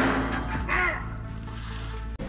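Background score of a TV drama scene: a low sustained drone that becomes quieter after about a second, with a short pitched cry-like sound near the start.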